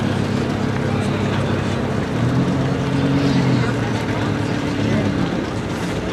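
Audi R8 V10 Plus and Audi RS6 Avant engines idling at the start line, a steady low hum that steps up in pitch about two seconds in and settles back down about a second and a half later.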